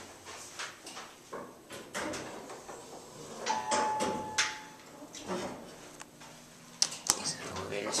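A Montgomery elevator's chime sounds once about three and a half seconds in, a single steady tone lasting about a second, with voices around it. Two sharp clicks come near the end.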